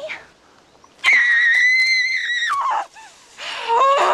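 A woman screaming in rage: one long, loud, high-pitched scream starting about a second in and dropping off at its end, then a second, lower yell near the end.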